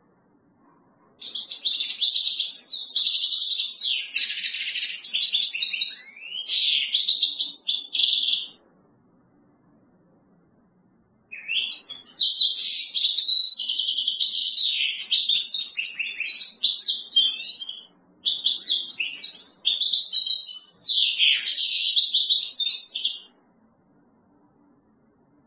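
European goldfinch singing: three long bouts of fast twittering and trills, the first starting about a second in, with a short silence after each.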